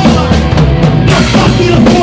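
Live Oi! punk band playing loudly, the drum kit to the fore with steady snare and cymbal hits.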